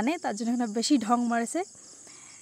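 A person speaks for the first second and a half. Under the voice and after it there is a steady, high-pitched chirring of insects that does not stop.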